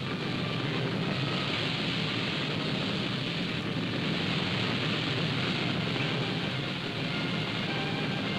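A steady low rumble and hiss that does not change, with faint held musical notes underneath.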